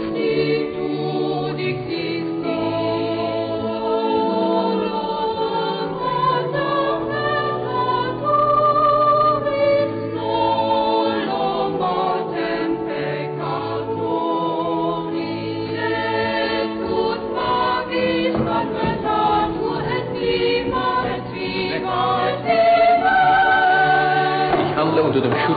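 Boys' choir singing a sacred choral piece in several parts, with the voices moving together over held low notes.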